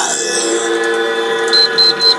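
Music of steady held tones from a video's soundtrack playing through desktop computer speakers. About one and a half seconds in, a run of short, high electronic beeps starts, about four a second.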